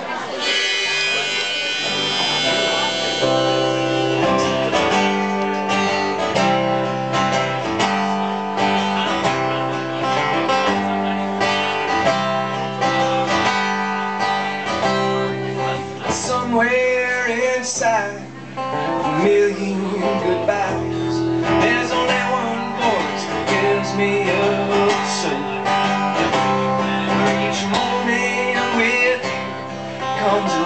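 Acoustic guitar played live, a steady strummed chord pattern.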